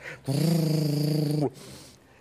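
A person's voice holding one drawn-out sound on a steady pitch for a little over a second, cutting off abruptly.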